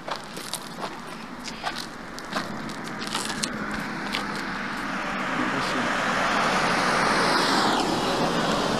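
A car approaching and passing close by: its tyre and engine noise grows louder over several seconds, then drops in pitch as it goes past near the end. Footsteps crunch on gravel in the first few seconds.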